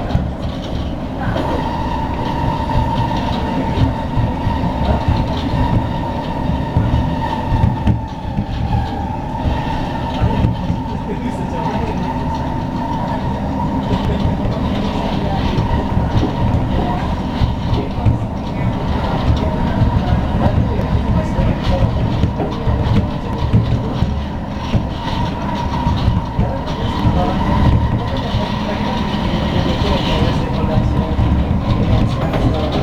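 Singapore MRT train running on an elevated track, heard from inside the carriage: a steady rumble of wheels and car body, with a continuous high hum that sets in about a second in.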